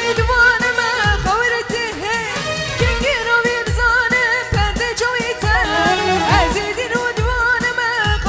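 Live, amplified wedding band music for a halay line dance: a woman singing an ornamented melody over electronic keyboard, with a heavy drum beat about once a second.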